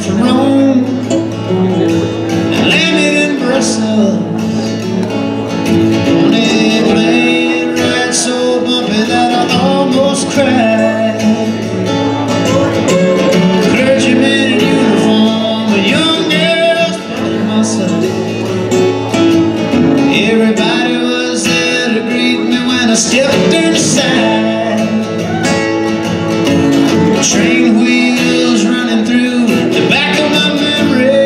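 Two acoustic guitars played together live, one strumming chords and the other picking melody lines, in a country-style song.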